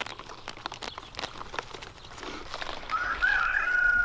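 Rustling and soft crackling of wood-chip mulch and onion leaves as a large onion is pulled up by hand. About three seconds in, a rooster crows, one long call that wavers at first and then falls slightly.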